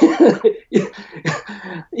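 A person coughing, about four coughs in quick succession.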